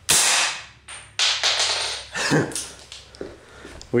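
A single rifle shot fired into a box, sharp and ringing briefly in the room, followed by a scatter of lighter clatters and clinks over the next couple of seconds.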